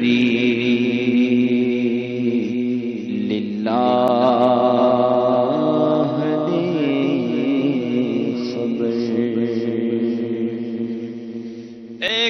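A man singing a naat, an Urdu devotional poem, into a microphone in long, drawn-out melodic phrases with held notes; the phrase fades away near the end.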